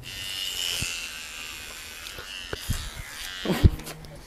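Electric hair clippers buzzing steadily as they cut through hair, with a few soft knocks of handling. The buzzing eases off near the end, and a sharper thump comes just before the end.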